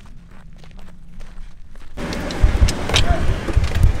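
Faint outdoor ambience for about two seconds, then cabin noise from a four-wheel-drive vehicle driving off-road over rough ground: a loud rushing with low thumps and rattles as it bounces.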